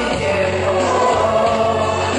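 A man singing a Chinese pop song into a microphone over backing music.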